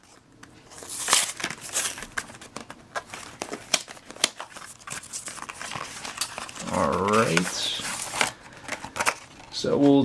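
Cardboard and plastic packaging of a trading-card intro pack rustling and crinkling as the box is opened and its contents pulled out, in many quick irregular handling noises. A short voiced sound from the person comes about two-thirds through.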